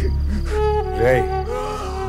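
Crickets chirping steadily in a night-time film soundtrack, over a sustained low drone and held notes of background score, with a brief wavering sound about a second in.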